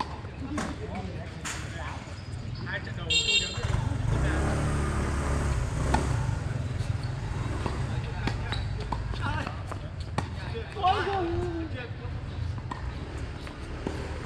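Tennis balls struck by rackets and bouncing on a hard court, a few sharp pops, over background voices and a steady rumble of passing traffic that starts about three and a half seconds in, with a short horn just before it.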